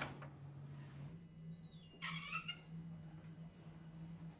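A brief high-pitched squeak with falling pitch about two seconds in, over a steady low hum, with a faint click at the very start.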